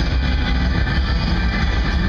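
Live rock band playing loud through a stadium PA, heard from the stands: a driving instrumental section led by electric guitar over heavy bass and drums.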